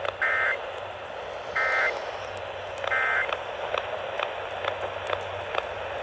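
Three short bursts of Emergency Alert System data tones, about 1.3 s apart, coming from a Midland weather radio's speaker on AM. These are the end-of-message codes that close the alert broadcast. Under them runs AM radio static with scattered crackling clicks.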